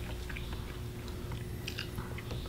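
People eating canned food at a table: scattered small clicks and ticks of chewing and of handling food at a tin can, over a steady low room hum.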